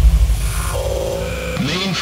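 Electronic music intro: a deep bass hit right at the start after a rising swell, with a sustained synth tone entering under a second in. A voice starts near the end.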